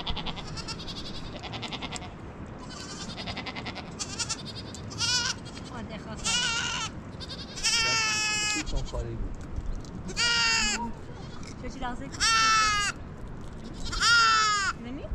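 Goat bleating again and again: about six quavering calls a second or two apart, starting about five seconds in, the longest lasting about a second.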